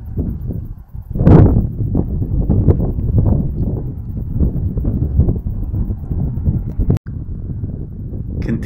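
Wind buffeting a camera microphone outdoors: a loud, gusty low rumble with a stronger gust about a second in. The rumble cuts out for an instant about seven seconds in.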